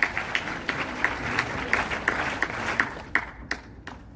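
Audience applauding, thinning to a few scattered claps near the end.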